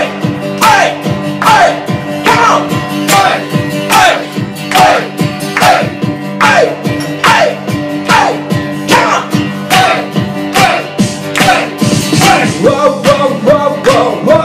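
Live acoustic guitar strummed in a steady rhythm, a little over one strum a second, with a man singing over it and holding a wavering note near the end.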